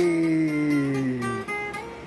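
A long, drawn-out vocal call, two pitched voices sliding slowly down together and fading out about one and a half seconds in.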